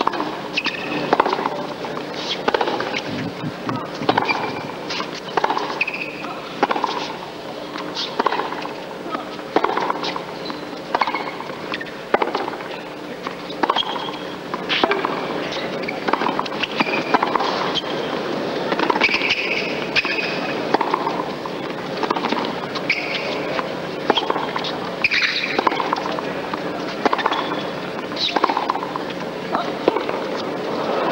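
Tennis rally on a hard court: racquets strike the ball back and forth, with a hit about every second, over the steady hum of the arena.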